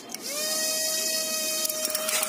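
A push-button switch clicks on, and a small brushed DC motor with a plastic propeller spins up. Its pitch climbs quickly, then holds as a steady high whine.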